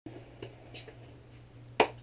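A single sharp hand clap near the end, over a low steady hum, with a faint knock early.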